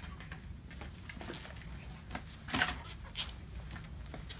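Quiet handling of pram parts: light clicks and rustles of plastic fittings and packaging, with one louder clack about two and a half seconds in.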